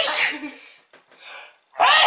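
A woman sneezing twice into the crook of her elbow: one sneeze right at the start and a second near the end.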